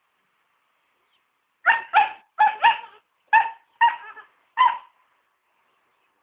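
A dog barking in play: seven short, high-pitched barks in quick succession, starting just under two seconds in and ending about a second before the end.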